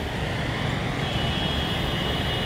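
Road traffic passing below: a steady rumble of engines and tyres.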